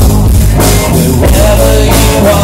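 Live rock band playing an instrumental passage: electric guitar, bass guitar and drum kit, with a steady drum beat.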